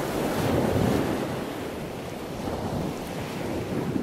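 Wind blowing on the microphone: a rushing noise that swells about a second in, eases off, then builds again near the end.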